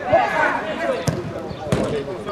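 A football kicked twice during play: two sharp thuds, one about a second in and one near the end, with players shouting.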